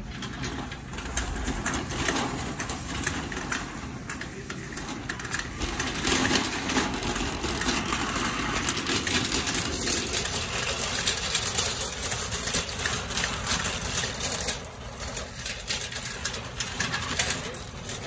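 Wire shopping cart rolling across a hard concrete store floor, its wheels and metal basket rattling continuously.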